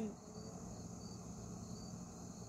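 Faint, steady chorus of crickets.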